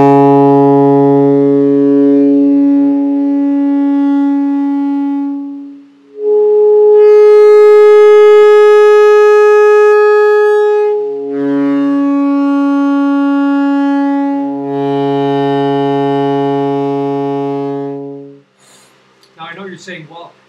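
Alto saxophone playing long sustained tones on the low B-flat fingering, moving between the low note and its higher overtones without changing fingers, in an overtone exercise for the altissimo register. The pitch shifts about 6, 11 and 15 seconds in, and the playing stops a little before the end.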